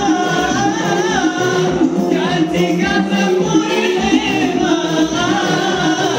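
Several men singing together into microphones over amplified music, the voices sliding up and down in sung phrases without a break.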